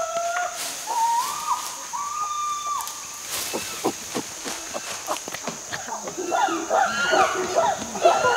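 Chimpanzee calls: a few long held hoots in the first seconds, then a faster, louder run of rising and falling calls building near the end. A steady high insect buzz runs underneath.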